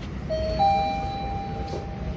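Mitsubishi elevator's hall chime: two electronic notes, the lower first and the higher just after, the higher one ringing on and slowly fading, signalling the car's arrival for the up direction.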